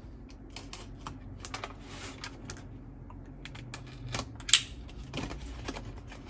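Fingernails picking and scratching at the taped seam of a cardboard box, a run of light irregular clicks and scrapes, with one sharper snap about four and a half seconds in as the tape or flap comes loose.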